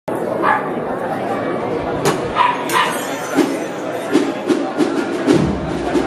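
Street crowd murmur with a few short, sharp cries in the first three seconds. A processional wind band then comes in: notes on a steady beat from about halfway, with deep bass notes joining near the end.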